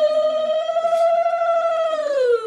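Conch shell (shankha) blown in one long, steady note.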